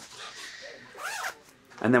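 A clothing zipper being pulled, a quiet rasp over the first second or so, followed by a brief faint sound about a second in.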